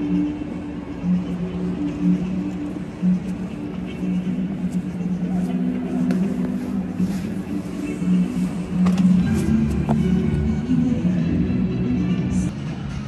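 Music played over a stadium's loudspeakers, with held low notes changing every second or so, and indistinct voices underneath.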